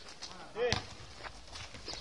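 A young man's short shout of "Ej!" about half a second in, over faint knocks and scuffs from a football game on an asphalt court.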